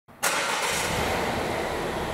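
2020 Volvo XC40 idling steadily, a low hum under an even noise, starting just after the opening and echoing off the concrete of an underground parking garage.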